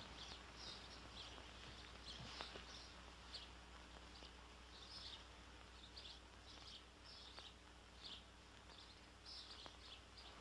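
Faint, short, high bird chirps, about one or two a second, over the hiss and low hum of an old film soundtrack.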